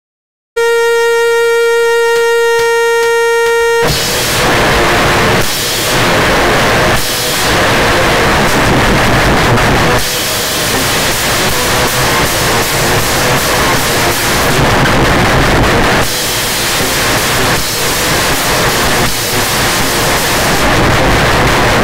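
A single steady pitched tone holds for about three seconds. Then the band comes in all at once: loud, dense, distorted heavy rock music with a drum kit, a nearly unbroken wall of sound with brief dips.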